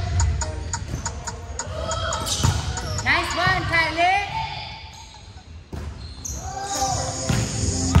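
Volleyball being struck by hand during a rally: a sharp hit about every one and a half to three seconds, four in all, the last right at the end. Players' voices come in the middle, with music underneath.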